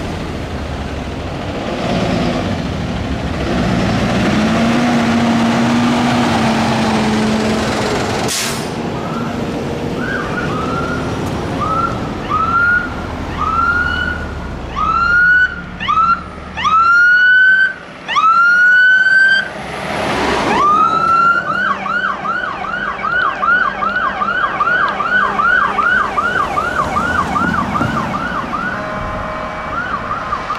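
Diesel fire engines rumble on approach, then a fire engine's electronic siren sounds as it passes. The siren starts with single rising sweeps that grow louder and come faster, then switches to a rapid yelp of about four cycles a second. There are two short bursts of hiss, one about eight seconds in and one just before the yelp starts.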